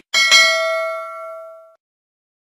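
Notification-bell sound effect of a subscribe-button animation: a bright bell ding, struck twice in quick succession, ringing and fading out over about a second and a half.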